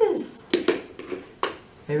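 Toy objects knocking and clicking against a plastic mixing bowl as they are handled and stirred: a few sharp clicks, two about half a second in and another near the middle.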